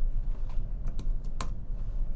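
A few scattered clicks of computer keys, the sharpest about a second and a half in, over a low steady hum.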